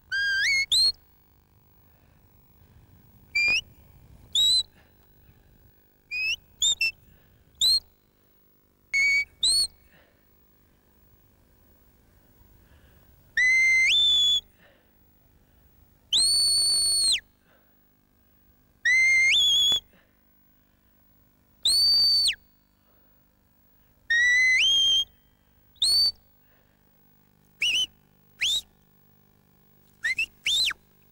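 A sheepdog handler's whistle commands to a working collie: a series of shrill whistle notes, some short chirps, some rising or falling, and several held for about a second, between stretches of quiet.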